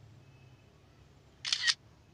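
Smartphone's screenshot camera-shutter sound: one short two-part click about one and a half seconds in, over a faint low hum.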